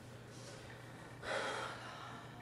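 A woman's single audible breath about a second and a quarter in, short and airy, over a faint steady low hum.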